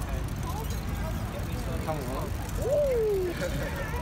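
Steady low rumble of wind and rolling noise on the microphone of a bicycle being ridden in a wheelie. About three seconds in, a voice gives one short call that falls in pitch.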